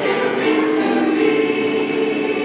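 Mixed choir of teenage voices singing, holding long chords in harmony.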